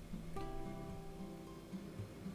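Quiet background music: plucked strings over a repeating bass line, with a new chord coming in about half a second in.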